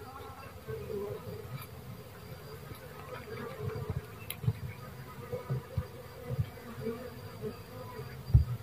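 A dwarf honey bee colony clustered on branches, buzzing in a steady low hum, with a few short low thumps in the second half.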